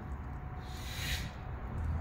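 Low steady outdoor background rumble, with one short hiss about a second in.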